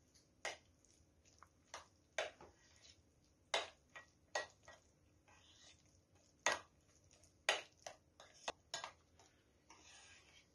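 Metal spoon clinking lightly against the sides of a glass bowl while stirring chopped dill into a thick sauce: about a dozen short clinks at an irregular pace.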